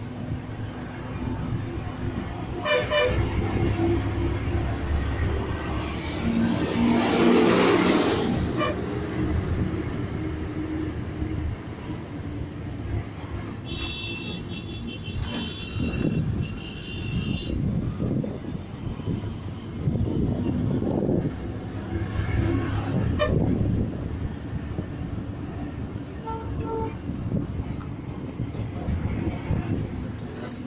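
KSRTC bus engine and road noise heard from the rear seat, swelling loudest about seven seconds in. A high-pitched horn sounds a few quick toots about halfway through.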